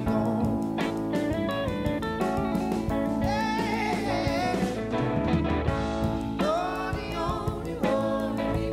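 Live pop band playing a song: a man singing lead over electric guitar, bass, keyboard and drum kit.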